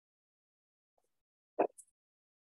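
Near silence, broken once about a second and a half in by a single brief thud.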